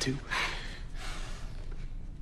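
A person's short breathy exhale about half a second in, with a fainter breath about a second in, over low room tone.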